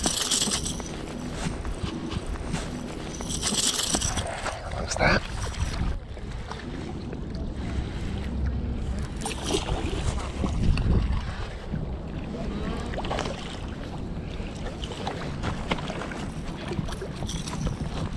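Wind buffeting the microphone with a steady low rumble. Over it come a few short rustling bursts and brief splashes as a hooked largemouth bass is reeled in at the surface and landed on the rocky bank.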